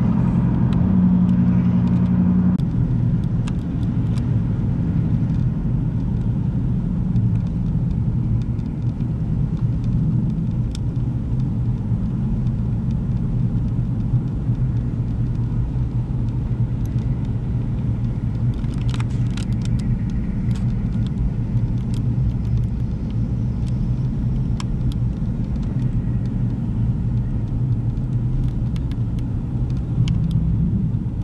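Steady low rumble of heavy vehicle engines running, with a louder engine note for the first two seconds or so.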